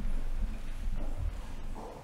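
Footsteps of people walking on a hard tiled church floor, irregular and soft, over a low rumble of room noise.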